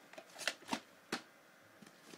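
VHS cassettes and their cases being handled and shifted around: a few quick plastic clicks and rustles, the sharpest three about half a second, three quarters of a second and just over a second in.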